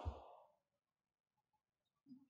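Near silence: room tone in a pause in speech, just after a man's voice stops.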